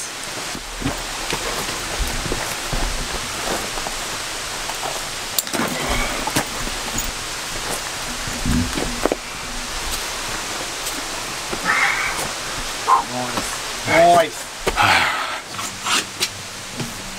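Steady outdoor hiss with scattered scuffs and knocks of people climbing over rock, and short bursts of voice or laughter near the end.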